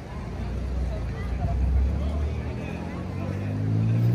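A motor vehicle's engine rumbling low and growing louder, its pitch rising slightly near the end, under the chatter of passers-by.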